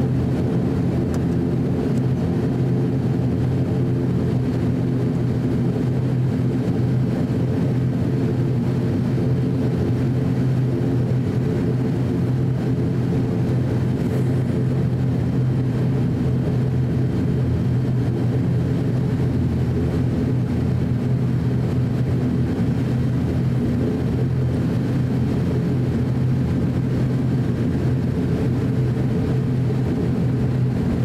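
Cabin drone of an ATR 42-600's Pratt & Whitney PW127M turboprop engines and propellers at taxi power, heard from inside the fuselage: a steady, even hum with a strong low tone.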